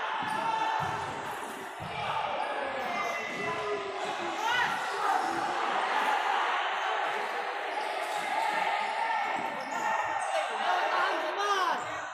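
Futsal match in an echoing sports hall: the ball thudding off feet and floor, a few sneaker squeaks on the court, and players and spectators shouting and chattering.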